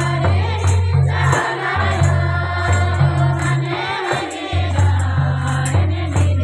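A devotional song sung by a group of voices over rhythmic percussion: a jingle on every beat, about twice a second, and a deep bass that pulses in long notes.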